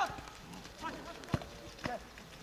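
A football struck sharply once about a second and a half in, with a smaller knock near the end, amid brief shouts from players on an open pitch.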